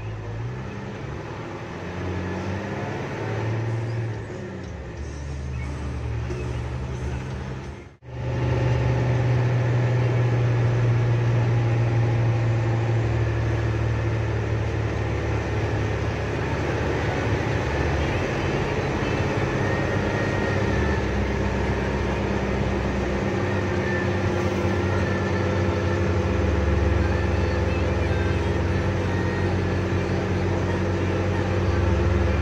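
Bus engine and road noise heard from inside the cab while the bus drives along, a steady low drone. The sound cuts out for an instant about eight seconds in, and from then on the drone is louder and steadier.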